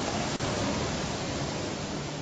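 Steady hiss of the recording's background noise, with a faint click about half a second in.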